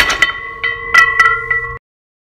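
A short metallic, bell-like chiming sting: a sharp hit, then several more ringing strikes over held tones, cutting off suddenly near the end.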